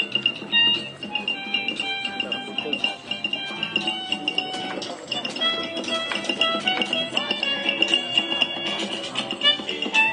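Music playing, with a steady high note held under a changing melody, mixed with people's voices.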